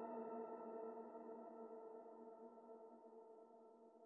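Drone from a DIY modular synthesizer and sampler: several steady tones held together as one chord, slowly fading out.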